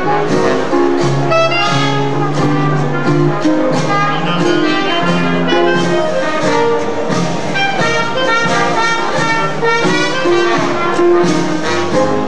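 Traditional New Orleans jazz band playing live, with clarinet, trombone and cornet all blowing together over a steady beat.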